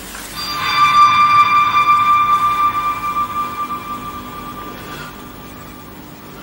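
A sustained bell-like tone from the play's sound score swells in and slowly fades away over about five seconds.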